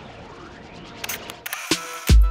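Logo sting sound effect: a faint rising whoosh, then from about halfway through a quick series of camera-shutter clicks.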